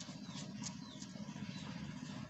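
Fingers scraping and digging in sand to uncover a small plastic toy, a few faint soft scratches.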